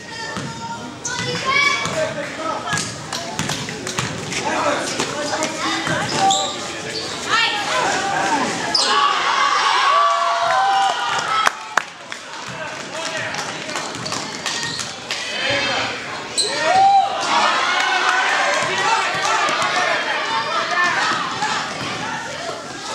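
A basketball bouncing repeatedly on a gym floor as players dribble up the court, with spectators' voices shouting and calling out over it.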